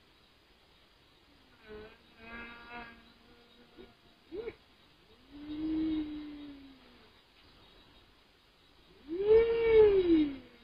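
Drawn-out, voice-like moaning wails, each swelling and sliding up then down in pitch. There is a short one about two seconds in, a longer one around six seconds, and the loudest near the end.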